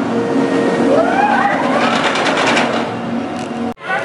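Kraken, a steel roller coaster, with a train running on the track: a loud, steady roar of several held tones, whose pitch sweeps up and falls back about a second in. It cuts off abruptly near the end.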